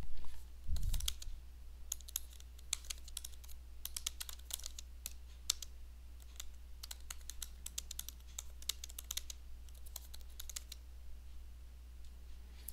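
Typing on a computer keyboard: a run of quick, irregular key clicks that stops shortly before the end, over a faint steady low hum.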